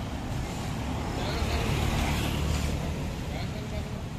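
Road traffic: a motor vehicle passing by, its low rumble and tyre noise growing louder from about a second in and easing off toward the end.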